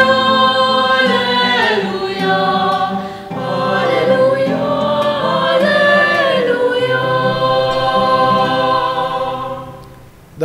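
A small mixed youth choir singing the Gospel acclamation in long held notes, with acoustic guitar accompaniment. The singing fades out just before the end.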